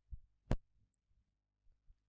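A few keystrokes on a computer keyboard while a word is typed: short, soft clicks, the sharpest about half a second in and two faint ones near the end.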